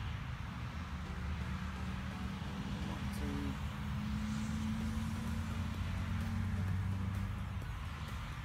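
A motor vehicle's engine running steadily, a low hum over an even road-noise hiss, fading near the end.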